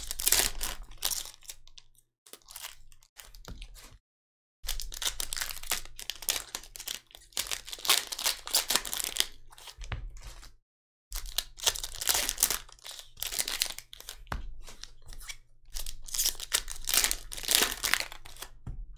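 Foil trading-card pack wrappers crinkling and tearing open in gloved hands, in long bursts broken by two brief silences, about four and ten seconds in.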